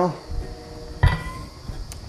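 Lit butane torch being set down on a workbench: a knock with a short metallic ring about a second in, then a light click near the end, over a faint steady hiss.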